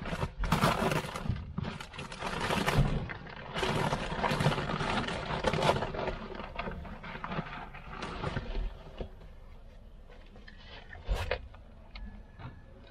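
Irregular rustling, scraping and knocking of hands handling things at a wooden, wire-mesh rabbit hutch while pellet feed is fetched. It dies down after about eight seconds, with one short knock near the end.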